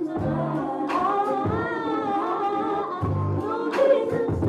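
A woman singing a melody into a microphone over a deep bass accompaniment, with a long held note in the middle that wavers with vibrato.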